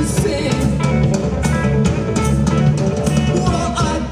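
Live rock band playing a song: a Yamaha drum kit keeps a steady beat under electric guitar.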